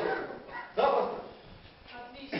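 A person's voice: a falling vocal sound, then a short loud outburst about a second in that fades away.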